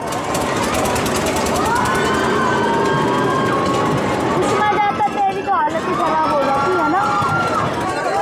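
Riders screaming and shouting on a fairground swing ride: several long, wavering screams over steady background noise.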